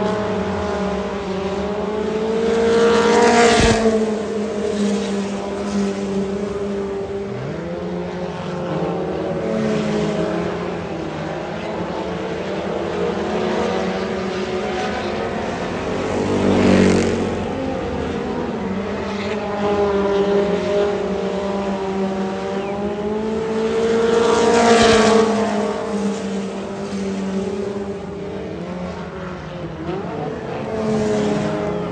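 Engines of several small stock cars racing around a dirt oval, their pitch rising and falling as they lap. The sound is loudest as cars pass close by about three and a half seconds in, again around seventeen seconds and again around twenty-five seconds.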